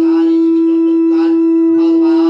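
Conch shell (shankha) blown in one long, steady, loud note, as part of puja worship. Voices are faintly audible behind it.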